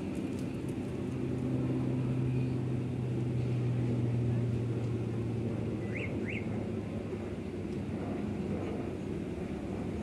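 Twin-turboprop airliner climbing out after takeoff: a steady propeller drone with a low hum, loudest a few seconds in and slowly easing. Two short chirps about six seconds in.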